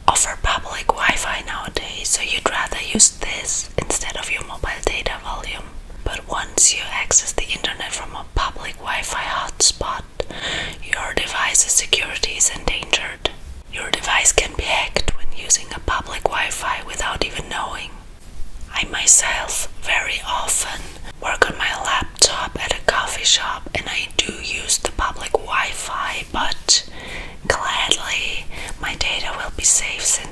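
A woman whispering close to the microphone, with short pauses about 13 and 18 seconds in.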